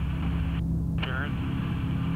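Steady low drone of the blimp's engines heard inside the gondola, with a short spoken phrase about a second in.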